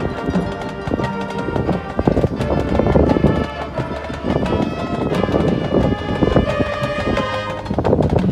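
Marching band and front ensemble playing, with a fast clattering percussion rhythm like galloping hooves running through the music.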